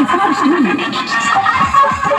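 Loud DJ dance music blaring from horn loudspeakers mounted on a decorated procession vehicle. The thumping bass beat drops out for a break with a wavering, sliding pitched sound near the start, and comes back at the end.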